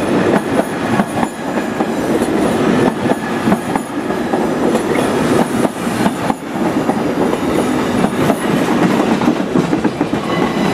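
SNCB double-deck passenger coaches rolling past: a loud, steady rumble of steel wheels on rail, with many clicks as the wheels cross rail joints.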